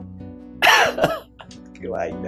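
A man's short, harsh, wordless vocal outburst, cough-like, about half a second in, with a shorter, fainter one near the end, over steady background music.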